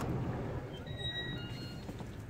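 Faint steady low rumble of background noise as a glass storefront door is opened and walked through, with a few brief, faint high-pitched squeaks about a second in.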